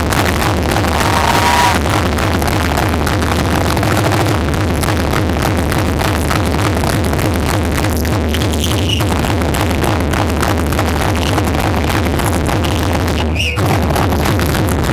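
Loud electronic techno from a DJ set, with a steady bass beat running under dense high-end texture. The music dips briefly about half a second before the end.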